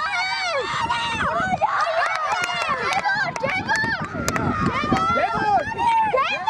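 Several high-pitched voices shouting over each other on a football pitch, with a few sharp knocks around the middle.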